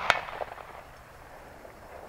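A single gunshot just after the start, a sharp crack whose report echoes and rolls away over about two seconds.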